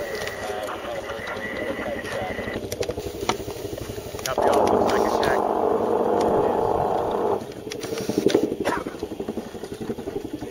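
Field radio transmission: a burst of squelchy, narrow-band radio sound about three seconds long near the middle, starting and cutting off abruptly, over outdoor ambience with scattered clicks.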